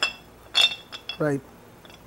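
Metal parts of a hand meat grinder clinking as the feed screw is slid into the grinder head: two sharp clinks with a short ring, the louder one about half a second in, then a couple of light ticks.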